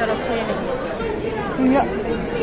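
Crowd chatter: many people talking at once in a large hall, with one nearer voice standing out near the end.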